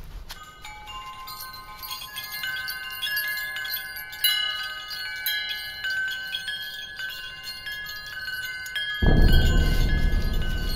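Chimes ringing: many high, bell-like tones struck one after another and left to ring over each other. About nine seconds in, a loud low rumble cuts in suddenly.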